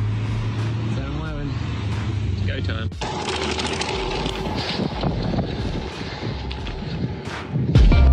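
Bicycle rolling fast over a gravel path, heard through a phone's microphone: tyre crunch and a dense rattle with wind noise. It starts suddenly about three seconds in.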